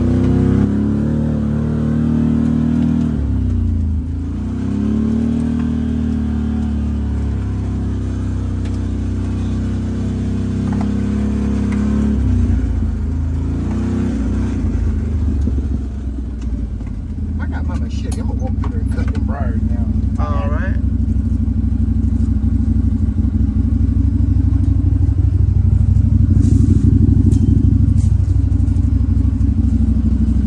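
Side-by-side utility vehicle's engine running as it drives, its pitch rising and falling with the throttle, heard from inside the open cab. It settles into a steadier, louder run in the second half, with a few brief high whines about two-thirds through.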